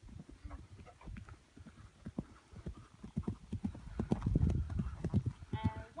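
Hoofbeats of a ridden pony on grass turf, a fast run of dull thuds that grows louder as the pony comes close and is loudest about four to five seconds in. A voice speaks briefly near the end.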